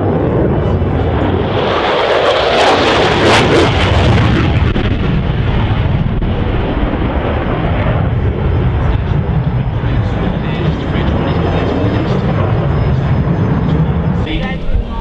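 Jet engine roar from F/A-18F Super Hornet twin-turbofan fighters flying a display. The roar swells loudest about two to four seconds in as a jet passes, then settles into a steady rumble.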